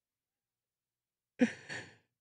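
Silence, then about one and a half seconds in a man's short breathy exhale, a sharp puff of breath that fades with a second smaller one after it.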